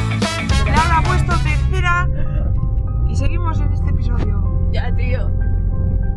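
Upbeat theme music with a fast beat that cuts off about two seconds in, giving way to the steady low rumble of a car's engine and road noise heard from inside the cabin, with a couple of brief bits of voice and some faint held tones.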